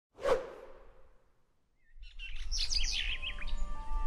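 A whoosh sound effect about a quarter second in, fading away over about a second. From about two seconds, birds chirping over a low rumble, with soft sustained music notes coming in under them.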